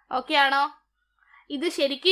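A woman's voice: one short drawn-out syllable, a brief pause, then her talking resumes about a second and a half in.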